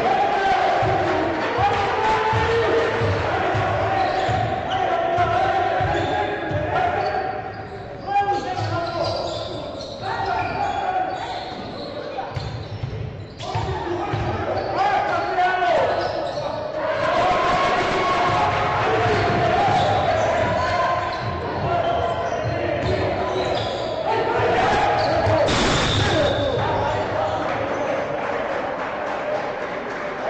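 Basketball bouncing on a hardwood court during live play, with voices throughout, echoing in a sports hall.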